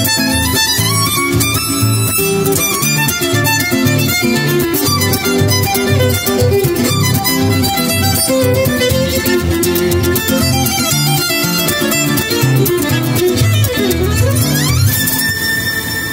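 Violin and flamenco guitar duo playing an up-tempo piece: a bowed violin melody over rhythmic strummed nylon-string guitar. Near the end a sound sweeps down in pitch and back up.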